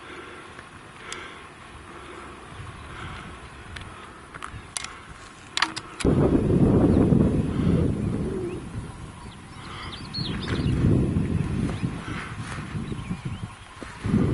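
Wind rumbling on the microphone, coming in loud gusts from about six seconds in, with a few short high bird chirps before that.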